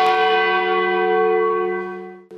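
A single bell stroke: a sudden strike that rings on with several steady tones and slowly fades away over about two seconds.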